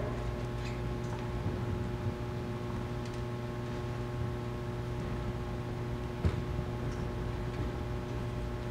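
Steady electrical hum from the PA system over faint room noise, with a few small clicks and one sharper knock about six seconds in.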